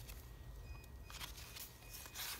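Faint paper handling: a page of a handmade paper journal being turned, with a few soft clicks over a quiet room hum.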